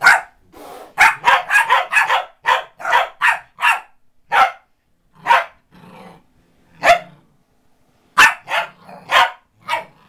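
Corgi barking: a rapid string of sharp barks starting about a second in, then single barks a second or so apart, then another quick cluster near the end.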